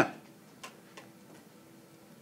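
Faint ticks of a stylus on a tablet screen while numbers are handwritten, with a couple of light clicks about half a second and a second in, over a faint steady hum.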